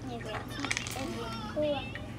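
Children's voices and chatter, with a few sharp clicks just under a second in, over a steady low hum.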